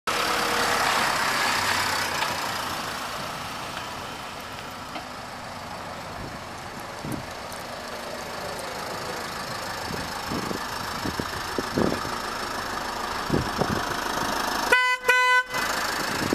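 A Renault van's horn sounding two short toots in quick succession near the end, one steady pitched tone. Before that there is a steady noisy background with scattered low thumps.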